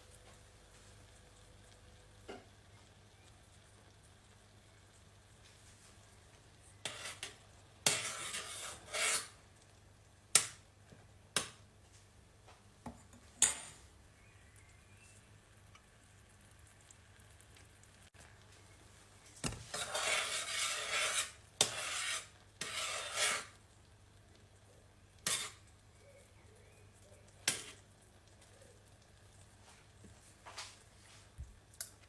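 Metal spoon stirring chopped strawberries and sugar in a small stainless steel saucepan as the sugar melts into a compote, clinking and scraping against the pan. The stirring comes in two longer spells, about 7 and 20 seconds in, with single taps of the spoon in between.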